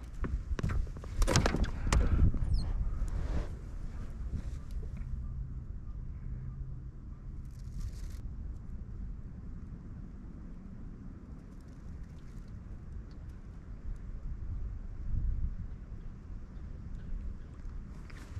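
Wind buffeting the microphone with a steady low rumble, over a few knocks and bumps on the aluminium jon boat in the first few seconds.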